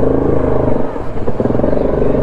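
Yamaha 700 ATV's single-cylinder engine running at low revs close up as the quad crawls over slick rock ledges, with a brief dip in the revs about a second in.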